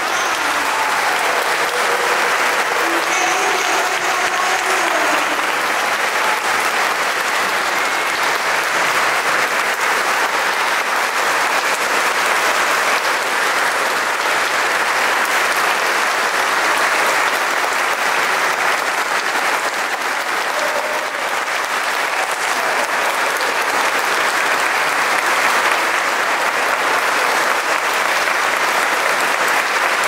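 Audience applauding steadily, with a few raised voices in the crowd during the first few seconds.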